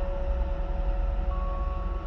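Ambient background drone: a steady low rumble with long held tones, a second, higher tone coming in about halfway through.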